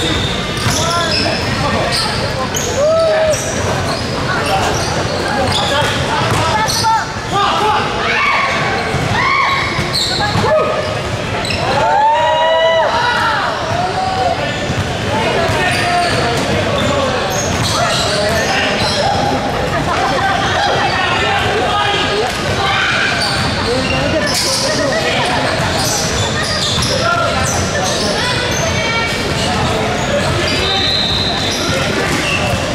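Basketball dribbling and bouncing on a hardwood gym floor during play, with players' voices calling out, all echoing in a large hall.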